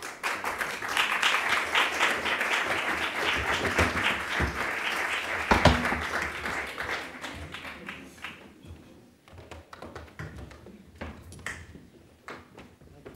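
An audience applauding. The applause swells quickly, then dies away after about eight seconds, leaving a few scattered claps and knocks, with one heavier thump near the middle.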